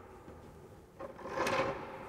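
A wooden chair being shifted on a stone floor: a short scrape and knock that starts about halfway through and lasts under a second.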